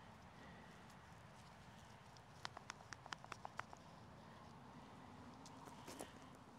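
Near silence, broken about halfway by a quick run of about eight light, sharp clicks lasting a second, typical of a small plastic seedling pot being handled as a tomato seedling is worked out of it.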